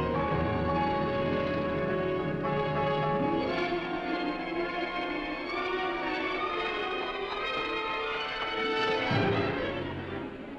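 Orchestral film score with many instruments holding sustained notes. It builds to a peak about nine seconds in.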